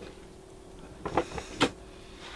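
A few light clicks and knocks in the second half, over a faint steady hum.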